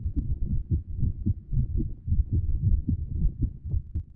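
Wind buffeting the microphone: an irregular low rumble in uneven gusts that starts and stops abruptly.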